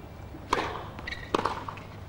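Low crowd and arena background between points at a tennis match, broken by two short sharp sounds, about half a second and about a second and a half in.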